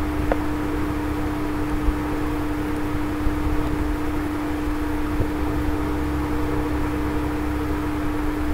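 Steady background hum with one constant mid-low tone, over a low rumble and hiss: the noise floor of the recording, with no other sound in it.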